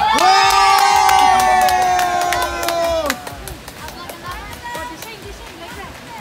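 Children cheering together in one long held 'yay' with clapping for about three seconds, which then cuts off, leaving quieter background chatter.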